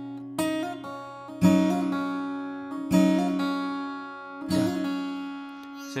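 Gibson acoustic guitar in double drop D tuning, lowered a half step, played with the fingers: four plucked chords and notes, each struck roughly every one to one and a half seconds and left to ring and fade.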